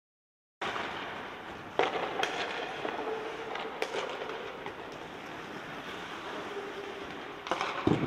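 Ice hockey practice in a rink: sharp cracks of sticks hitting pucks, with skates scraping on the ice between them, all echoing off the arena walls. The loudest crack, a shot on the goalie, comes near the end.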